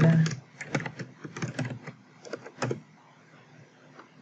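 Typing on a computer keyboard: a run of irregular keystrokes that stops about three seconds in.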